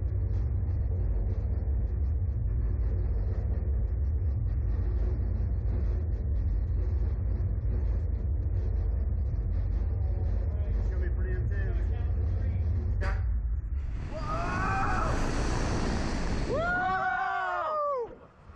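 Slingshot reverse-bungee ride launching: a steady low rumble while the capsule waits, a sharp click about thirteen seconds in as it is released, then a rush of wind and the two riders screaming, their cries rising and falling in pitch near the end.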